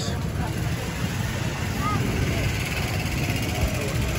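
Steady street noise with a low engine hum from nearby vehicles, and faint voices in the background.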